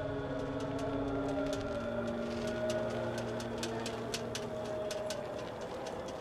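Background music: soft held chords with sparse light clicks over them. The chord shifts about two and a half seconds in.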